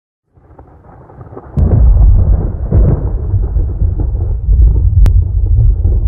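A deep, loud thunder-like rumble that starts faintly and swells sharply about a second and a half in, with a couple of sharp cracks over it.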